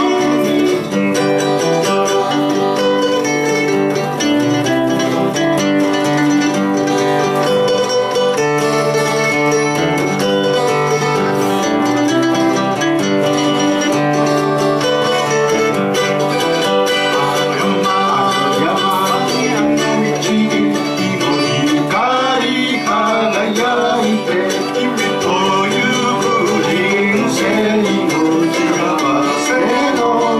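A folk song played live on acoustic guitar with a second plucked string instrument, the first half instrumental; a man's singing voice comes in about halfway through.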